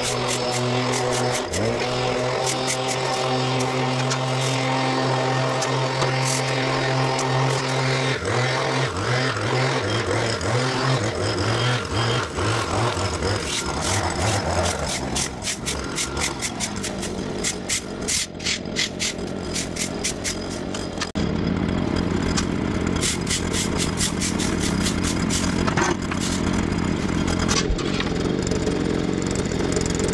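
Small petrol engine of a Stihl hedge trimmer running steadily for the first eight seconds, then its speed rising and falling as it works. From about 21 seconds in it settles into a rougher, fuller steady running, with sharp clicks scattered through.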